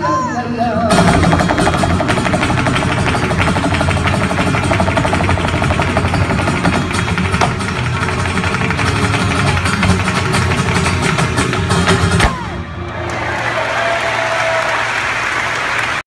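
Flamenco dancer's rapid zapateado footwork, fast runs of heel and toe strikes on the stage, over flamenco guitar, stopping abruptly about twelve seconds in at the end of the dance. Audience applause and shouts follow.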